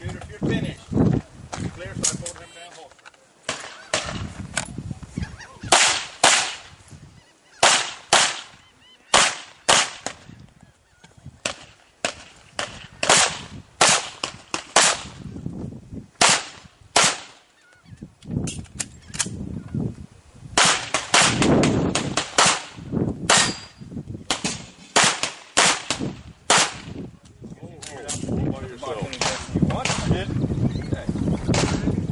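Handgun shots fired in quick strings, many in close pairs, with short pauses between strings.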